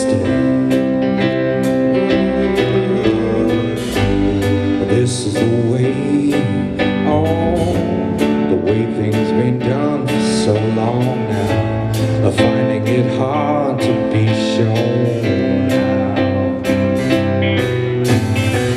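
A rock band playing live: electric guitars and keyboard over a steady drum beat, with a singer.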